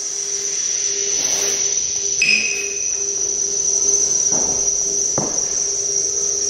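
Experimental modular-synthesizer electronics: a steady, high, whistle-like tone held over a lower drone and hiss, with a short higher blip about two seconds in and two soft clicks near the end.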